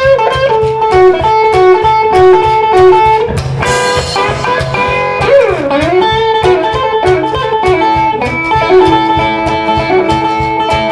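Live duo instrumental break: a hollow-body electric guitar picks a lead line of short repeated notes over fast, steady washboard scraping and cymbal. About five seconds in, one guitar note slides down and back up.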